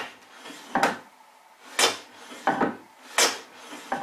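Hand plane run on its side along a shooting board, shooting the end grain of a mitre: repeated back-and-forth strokes, a quick swish about every 0.7 s.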